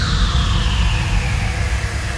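Cinematic logo-reveal sound effect: a deep rumble slowly fading, with the tail of a falling whoosh dying away in the first half second.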